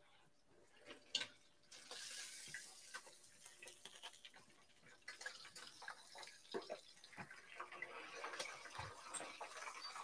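Faint water running at a kitchen sink, with scattered light clinks and knocks of dishes.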